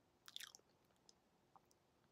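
Near silence: room tone, with a brief cluster of faint mouth clicks about a quarter second in and a couple of tiny ticks later.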